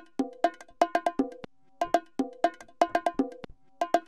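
Sliced bongo loop played back in a drum sampler at 120 bpm: a quick repeating pattern of sharp, ringing bongo hits, with one slice reversed.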